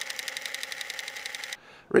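Film camera mechanism running as a sound effect: a rapid, even clatter over a steady whir, cutting off suddenly about a second and a half in.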